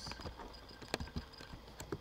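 A few irregular clicks from a computer keyboard and mouse, over a low steady hum.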